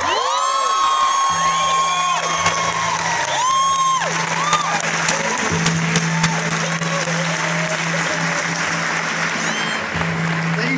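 Audience applauding and cheering at the end of a live piece, with whoops and whistles in the first few seconds, over a steady low tone.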